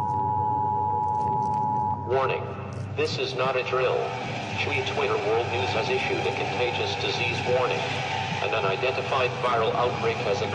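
An emergency-broadcast alert tone, two steady high tones sounding together, for about two seconds. It then gives way to a dense jumble of many voices over a bed of noise.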